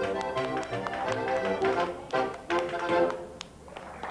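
Accordion and upright bass playing lively Bavarian-style folk music, with people clapping along in sharp, quick claps. The music drops away about three seconds in.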